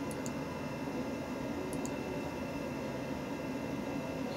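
Steady whirring hum of an old PC running, with two faint clicks of the mouse buttons as the menu is worked, one near the start and one a little before halfway.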